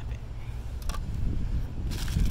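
Wind buffeting the microphone as a steady low rumble, with a few faint crinkles of a small plastic parts bag being picked up near the end.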